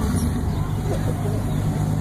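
An off-road vehicle's engine running steadily, a low even hum, with faint voices about a second in.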